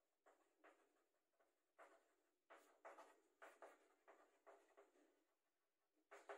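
Chalk writing on a blackboard: a string of about ten short, faint, irregular strokes as words are written out.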